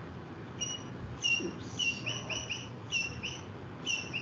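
Short high-pitched chirps repeating about three times a second, often in pairs, over faint room hiss.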